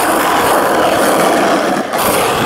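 Skateboard wheels rolling over asphalt: a loud, steady rolling noise.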